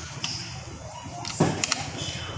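Metal parts of a Denso alternator knocking and clicking as it is handled during disassembly: a light click, then about one and a half seconds in a dull thud followed by two sharp clicks.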